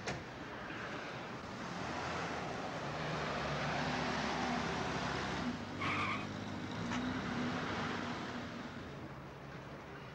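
A car driving up and pulling to a stop with its engine running, the tyre noise swelling and fading. There is a short squeal about six seconds in, as it halts.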